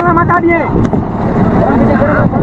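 Men's voices calling out briefly at the start, over the steady low rumble of a fishing boat's engine.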